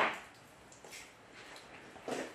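Quiet room tone, close to silence, after a short sound right at the start where a spoken phrase ends.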